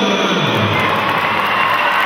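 Crowd cheering over music after a goal, with a tone sliding down in pitch in the first second.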